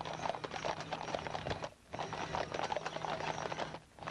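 A team of Clydesdale draft horses walking on asphalt, many shod hooves clip-clopping in a dense, overlapping patter. A steady low hum runs underneath, and the sound drops out briefly about two seconds in.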